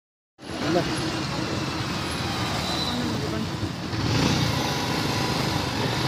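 Road traffic noise from cars and motorcycles on a city street, a steady haze that gets a little louder about four seconds in. A person's voice calls out briefly near the start.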